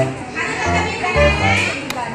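Music with a steady bass line, mixed with children's voices.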